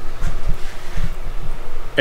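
Low, uneven rumbling and thudding on the microphone of a hand-held camera as it is turned around: handling noise.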